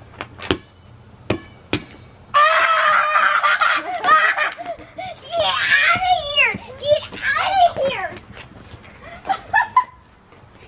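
A rubber playground ball bouncing sharply on a concrete driveway three times, then loud laughing and shrieking from the players that runs for several seconds.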